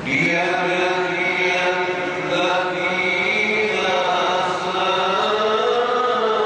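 A male Quran reciter chanting in melodic tajwid style. One long sung phrase begins abruptly and is held with slow, ornamented turns in pitch.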